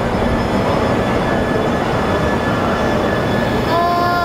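E3 series Shinkansen train moving slowly along the platform, a steady running noise from its motors and wheels.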